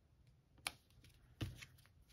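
Quiet handling of paper and cardstock as a glued paper panel is pressed down onto a card flap: one sharp tap a little past half a second in, and a soft thump about a second and a half in.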